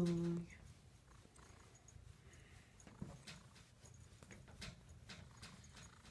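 Faint, scattered clicks and taps close to the microphone, a few seconds apart, as a cat noses right up against the phone.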